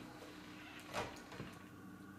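Quiet room tone with a faint steady low hum, broken by one sharp click about a second in and a fainter one shortly after.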